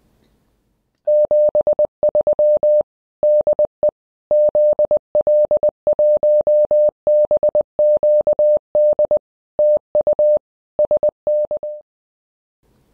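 Morse code sent as a single steady beep, keyed on and off in quick dots and dashes grouped with short pauses, starting about a second in and stopping just before the end.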